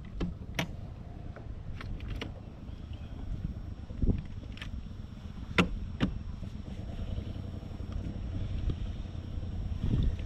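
Scattered sharp clicks and taps, with one duller knock about four seconds in, as fishing tackle is handled on a bass boat's deck, over a low steady rumble of wind on the microphone.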